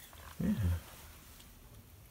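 A man's single short spoken 'yeah' with a falling pitch, then quiet room tone.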